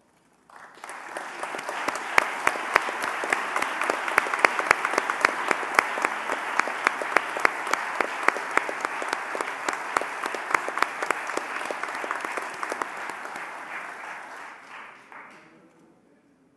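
Audience applause: many hands clapping, starting suddenly about half a second in, holding steady with single sharp claps standing out, then dying away near the end.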